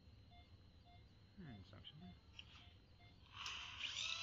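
Near silence with a faint, evenly repeating short beep, then about three seconds in a surgical dental drill starts up with a loud steady hiss and high whine as it begins cutting the wisdom tooth's crown.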